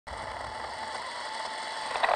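A steady hiss of static with a faint, thin high tone running through it.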